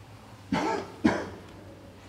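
A man coughing twice, two short harsh bursts about half a second apart.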